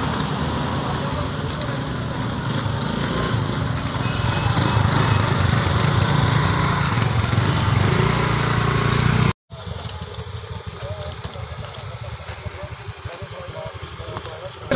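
Motor scooter engines running close by, a steady rumbling drone that grows louder about four seconds in. The sound cuts off abruptly about nine seconds in, leaving quieter street noise with faint voices.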